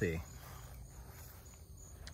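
Faint, steady chirring of insects in the background, with no other distinct event.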